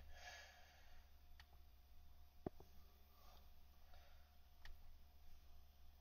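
Near silence: faint room tone with a steady hum, broken by one faint click of a computer mouse button about two and a half seconds in and a couple of fainter ticks.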